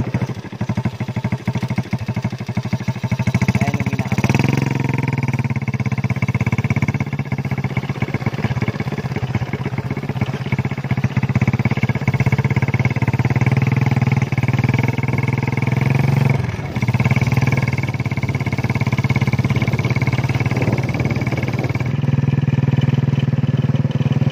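Small motorcycle engine running under way. It gets louder about four seconds in and dips briefly past the middle.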